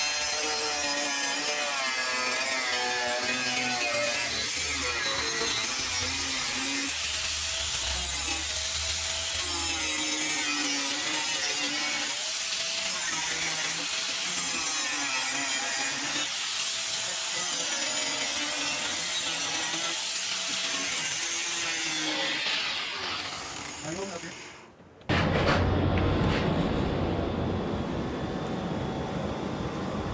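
Angle grinder cutting and grinding steel angle iron from a bed frame, a dense steady hiss, with a singing voice over it; it fades out about three quarters of the way through. A steady rushing noise with a low hum follows.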